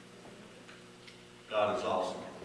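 Quiet room tone for about a second and a half, then a person's voice starts speaking, loud and sudden.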